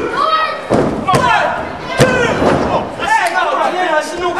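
Thuds of bodies and hands hitting a wrestling ring's canvas mat during a pinfall count: a few sharp impacts, the loudest about two seconds in.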